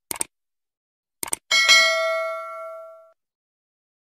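Subscribe-button animation sound effect: short clicks twice at the start and again about a second in, then a single notification-bell ding that rings out and fades over about a second and a half.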